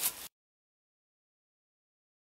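Silence: after a brief tail of outdoor background noise, the sound track cuts out completely, with no sound at all.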